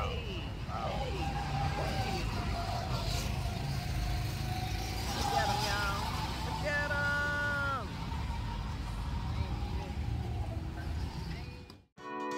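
Go-kart engines running steadily around a kart track, with people's voices calling out over them. The sound cuts off suddenly just before the end.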